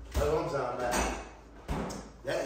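A voice speaking briefly, with a few knocks, the last and sharpest a refrigerator door shutting with a thud near the end.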